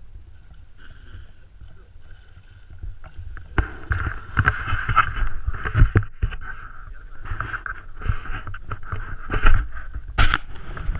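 Lake water lapping and slapping against a small boat's hull, with wind buffeting the microphone. From about three and a half seconds in, a whirring tone comes and goes in repeated spurts, mixed with small knocks.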